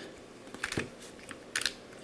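Plastic corner-turning octahedron puzzle being turned by hand, its layers making a few faint clicks.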